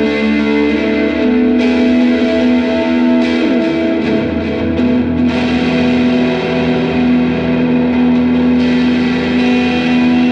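Electric guitar played through a Southampton Pedals Indie Dream drive/delay/reverb pedal, with both its overdrive and delay-reverb sides switched on: sustained chords ring out and wash into a reverb tail, with fresh chords struck about a second and a half, five and eight and a half seconds in.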